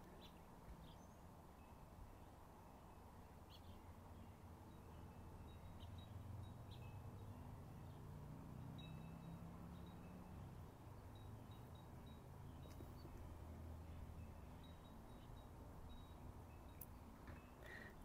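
Faint birds chirping now and then in the background over quiet outdoor ambience, with a soft low rumble that swells through the middle.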